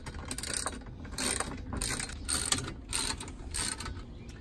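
Hand ratchet wrench clicking through about six quick strokes, a little under two a second, as a nylon-insert lock nut is run down on a bolt fastening a steel drawer slide to its mounting bracket.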